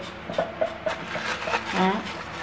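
Crinkling of a water-filled plastic bag and light sloshing as a hand presses it down onto a plate inside a ceramic pickling crock, weighting the eggplants under the brine, with a few small clicks.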